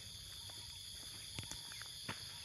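Steady high-pitched chorus of insects, several even pitches layered over one another, with a couple of faint clicks about one and a half seconds in.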